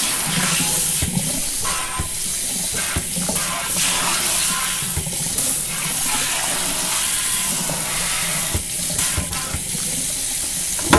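Water running steadily into a kitchen sink and draining through a plastic sink strainer, with a few short knocks.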